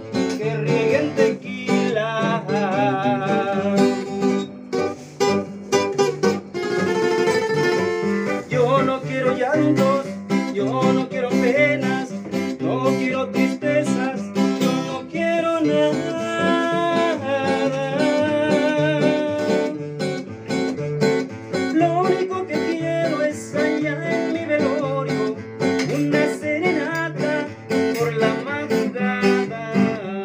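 Two acoustic guitars strummed in a steady rhythm under men's singing voices with a wavering vibrato, the lead passing from one singer to the other.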